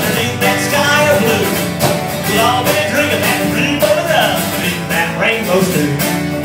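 Live country music: an acoustic guitar strummed steadily, with a bending melody line carried over it.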